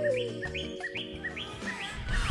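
Short, high bird chirps repeating evenly, about two or three a second, over a sustained music chord.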